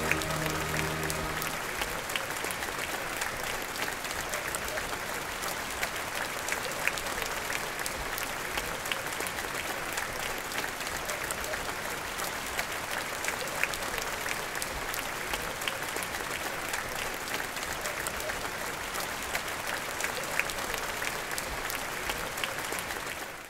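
Large audience applauding steadily. In the first second or two, the orchestra's last held chord dies away under the clapping.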